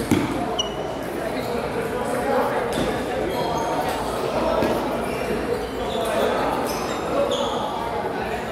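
Table tennis balls clicking off tables and paddles from games around a large, echoing hall, over a murmur of voices. There is one sharper click just after the start.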